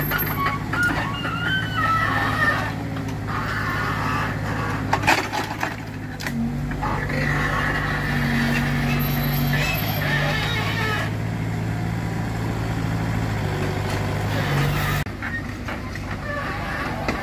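Diesel engine of a tracked mini excavator running steadily as its hydraulic grapple swings logs onto a truck, its note shifting a few times as the machine works. A few sharp knocks about five seconds in.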